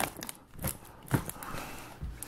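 Plastic Blu-ray cases knocking and clacking as a case is crammed back into a tightly packed shelf, about three short knocks.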